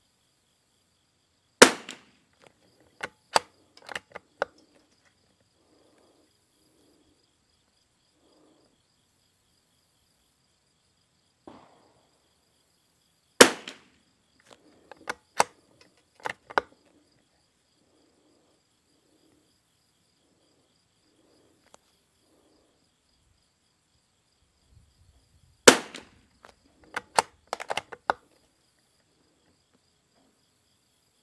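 Lithgow LA101 bolt-action .22 rimfire rifle firing three single shots about twelve seconds apart. Each shot is followed by a quick run of sharp metallic clicks as the bolt is worked to eject the case and chamber the next round.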